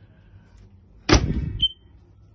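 Wooden kitchen cabinet door being shut, a sudden knock-and-rattle about a second in that ends in a short high click.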